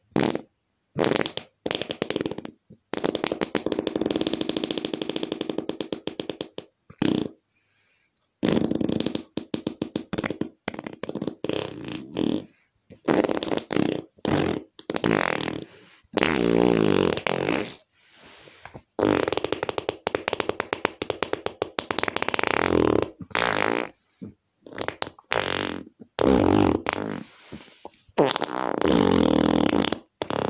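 A string of farts one after another: short pops and long, drawn-out fluttering ones lasting up to about three seconds, with brief silences between them.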